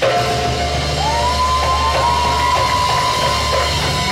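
Live Arabic belly-dance music from a keyboard and hand-drum ensemble: a long high keyboard note slides up into place about a second in and is held for nearly three seconds over a steady deep bass and percussion.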